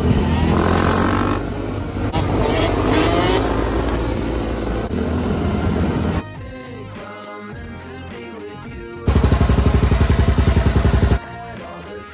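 A dirt bike engine revving hard as the rider holds a wheelie, over background music. About six seconds in the engine drops away and the music carries on. Near the end a loud, fast, even pulsing lasts about two seconds.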